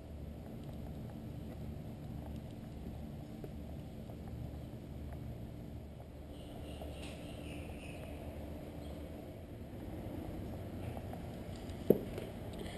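Low, steady background rumble, with faint high chirps about halfway through and one sharp click near the end.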